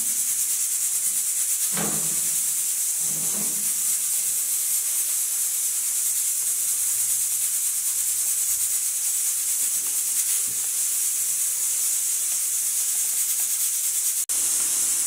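A steady, high-pitched hiss, with a few soft knocks in the first few seconds.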